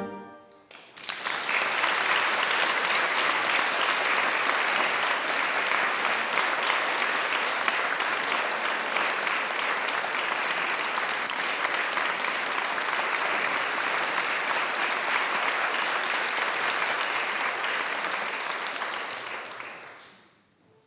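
The last chord of a church organ dies away in the church's echo, then the audience applauds steadily and the applause fades out near the end.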